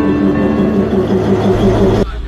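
Narrow-gauge diesel locomotive running with a steady engine drone as it rolls along the platform.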